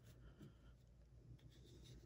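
Faint sliding and rubbing of glossy trading cards as one card is pushed off the front of a stack, with a few soft ticks of card edges.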